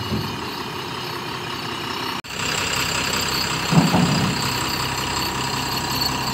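A truck's diesel engine idling close by, a steady low drone. It breaks off for an instant about two seconds in, and a brief louder low sound stands out just before four seconds.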